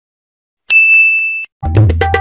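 A single bright ding, a bell-like sound effect, rings for under a second and cuts off sharply. Just before the end, drum-heavy music with a deep bass starts.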